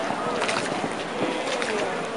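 Steady noise of a boat moving on the canal, with indistinct voices of people nearby.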